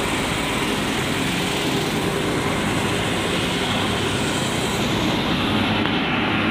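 Steady, loud running of sewer-cleaning machinery at an open manhole: the vacuum suction hose and ventilation blower working without a break.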